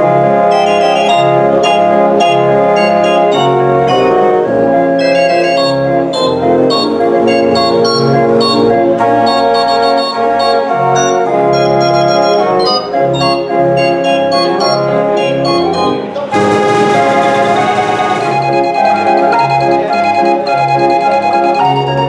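The Dutch street organ (draaiorgel) De Lekkerkerker plays a tune on its pipes, the melody carried over a steady pulsing bass. A hissing swell lasting about two seconds comes in around sixteen seconds in.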